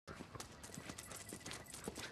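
Footsteps of a man and a dog going up concrete steps: light, irregular taps and clicks of shoes and claws on the stone.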